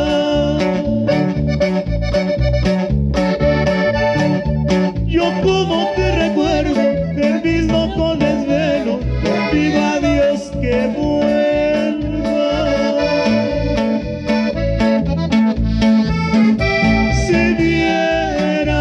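Norteño band playing an instrumental passage of a song: accordion carrying the melody over bass, guitar and a drum kit keeping a steady beat.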